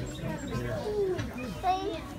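Voices of several people talking and calling out, children among them.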